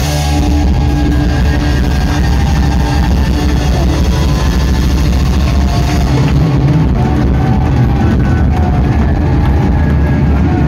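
A live rock band playing loudly, with electric guitars, upright bass, drum kit and keyboards.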